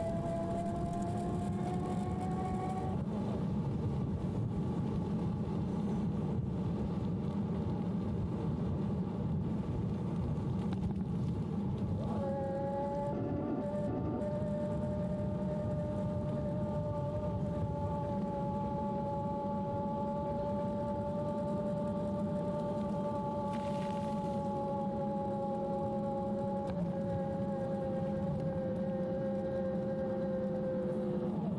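CYC Photon mid-drive e-bike motor whining under power while riding, a steady tone that fades about three seconds in and comes back stronger about twelve seconds in, slowly sinking in pitch as the motor slows. Beneath it is a constant rush of wind and road noise.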